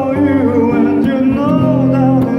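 Male voice singing a slow ballad, accompanied by a strummed acoustic guitar.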